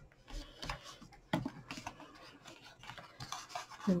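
Stiff card stock being handled and pressed together by hand: irregular rubbing and rustling of paper with a few sharp taps.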